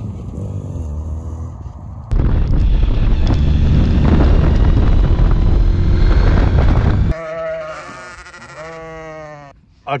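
Classic Mini engine running with road noise as the car drives, getting louder about two seconds in and cutting off suddenly about seven seconds in. A couple of sheep bleats follow near the end.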